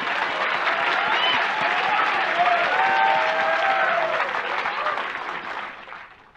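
Audience applauding, with a few voices audible through the clapping; the applause dies away near the end.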